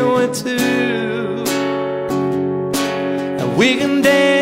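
Acoustic guitar strummed in a slow ballad, with a man's singing voice holding and bending a note at the start and coming back in with a rising swoop near the end.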